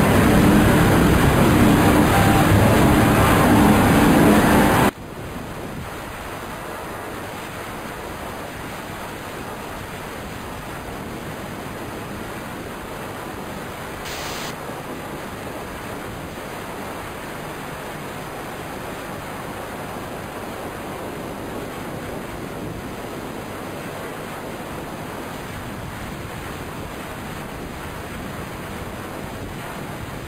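Loud droning, music-like tones that cut off abruptly about five seconds in, followed by a steady hiss of noise like static or wind. The hiss runs on evenly, with one brief brighter swish about halfway through.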